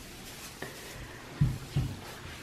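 Quiet room tone with two soft, low thumps close together, about one and a half seconds in.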